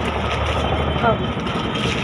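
A steady low mechanical hum with background noise. A voice is heard briefly about a second in.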